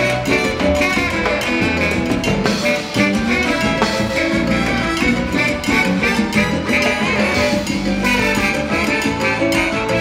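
Live salsa band playing an instrumental passage without vocals: trombones and saxophone over timbales, congas and drum kit, keeping a steady salsa rhythm.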